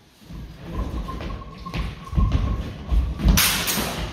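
Fencers' feet thudding and stamping on a wooden floor as they close in, followed about three seconds in by a brief, loud, hissing clash of steel sabres.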